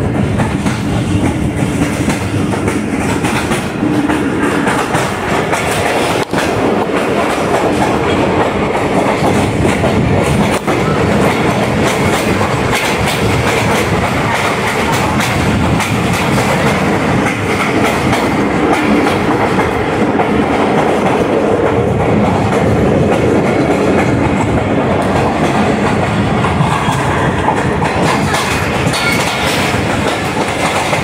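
Tezgam Express passenger coaches running along the track: a steady rumble of wheels on rails with a continual clickety-clack over the rail joints, heard from the side of a moving coach.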